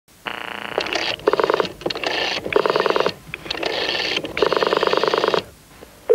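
Electronic telephone ringer trilling in a series of short buzzy bursts, about seven of them, that stop shortly before the end.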